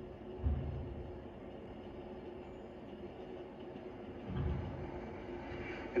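Quiet background audio of a television drama heard through the set's speakers: a steady low hum, with two brief low rumbles, about half a second in and again just after four seconds.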